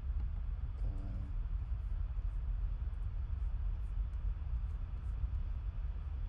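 Steady low rumble of background noise, with a brief faint hum about a second in and a few faint clicks.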